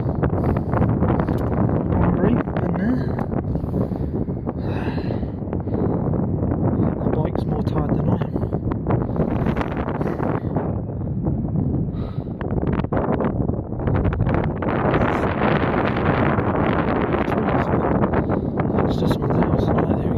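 Wind buffeting the microphone, a loud continuous rumble that gusts harder for several seconds in the second half.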